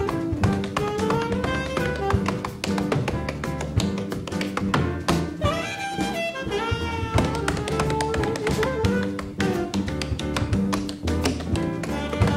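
Tap shoes striking a stage floor in rapid, dense rhythms, played along with a live jazz band: a saxophone melody over double bass, piano and drums.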